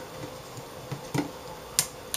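A few sharp little clicks from fingers handling the LED backlight wire against the metal frame of an LCD panel, the loudest near the end.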